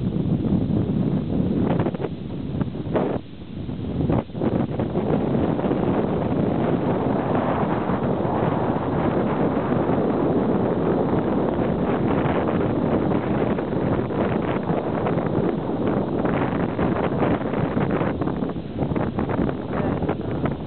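Wind buffeting the camera microphone, a steady rough rush that dips briefly about three to four seconds in.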